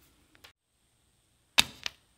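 An arrow-hit sound effect standing for a thrown toothpick striking a paper character: a sharp sudden thwack about a second and a half in, then a second, smaller hit right after.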